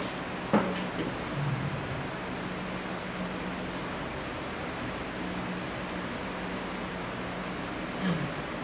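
Steady hiss and low hum of room noise picked up by a headset microphone, with a single sharp knock about half a second in as a man sits down in a chair.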